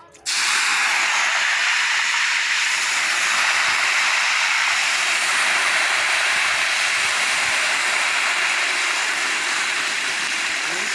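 Food dropped into hot oil in a large iron kadhai bursts into a loud, steady sizzle that begins suddenly just after the start and holds, easing slightly near the end.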